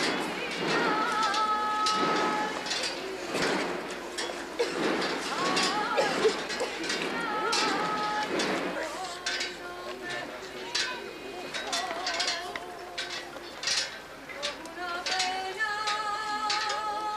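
A woman singing a saeta, the unaccompanied flamenco lament of Holy Week processions, in long held notes with wavering ornamented turns. A crowd murmur and scattered clicks lie beneath the voice.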